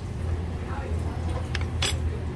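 Tempura-battered green beans frying in hot oil, crackling with a few sharp pops, the loudest a little before the end, over a steady low hum.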